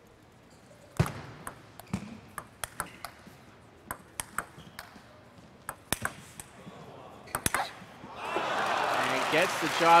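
Table tennis rally: the ball clicking sharply off bats and table at a quick, irregular pace for about six seconds, ending in a forehand smash. Applause then swells up about eight seconds in.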